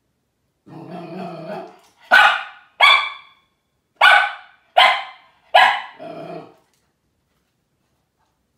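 A small dog barking in fright at a light-up Halloween skull decoration. It gives a low growl about a second in, then five short, sharp barks over the next four seconds, and ends on a brief growl.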